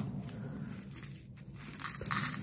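A thin plastic packet of nail rhinestones being handled, rustling softly and crinkling more sharply near the end.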